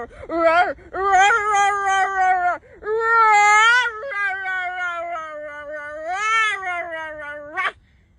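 A series of long, high-pitched, wordless wailing cries, each drawn out for a second or more with a wavering pitch. The last ends in a sharp upward rise shortly before it cuts off.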